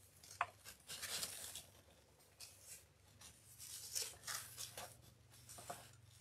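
Faint rustling and crinkling of ribbon loops as hands squeeze and gather the centre of a large bow, in irregular bursts with a few small clicks.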